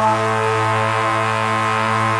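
Live post-punk band music: a sustained keyboard-and-bass chord, changing to a new held chord right at the start and ringing steadily.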